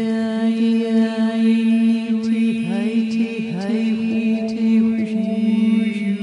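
Sound-healing vocal toning: a woman's voice holding long chant-like tones over a steady drone, with a run of sliding, wavering pitches around the middle.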